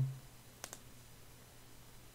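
Two faint clicks in quick succession a little over half a second in, over a low steady hum.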